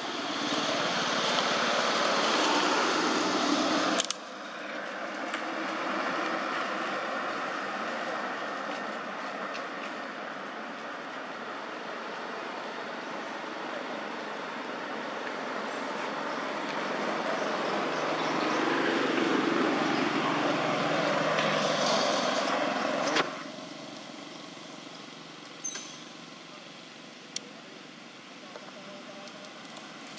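Road traffic: passing vehicles, a steady noise that swells and fades, cut off abruptly about four seconds in and again about five seconds before the end.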